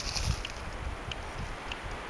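Wind rumbling on the microphone outdoors, strongest in the first half second, with a few faint crunches or ticks of footsteps on the trail.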